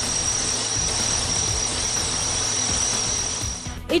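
Steady jet engine roar with a constant high-pitched whine over it, cutting off abruptly near the end, with background music under it.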